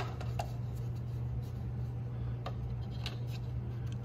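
A few faint clicks and taps as a 3D-printed plastic oil funnel is handled and pressed into an engine's oil filler neck, over a steady low hum.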